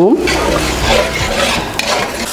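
Ground spice paste frying in hot oil in a wok, sizzling as a spatula stirs and scrapes it across the pan at the stage of sautéing it until fragrant.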